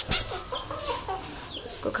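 Young chickens in a wire cage calling in short, bending notes, after two sharp clicks right at the start.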